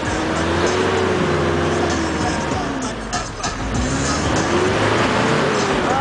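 Mitsubishi L200 pickup's engine labouring through soft sand, its pitch rising and then falling back twice as the revs climb and ease off, over a steady rushing noise.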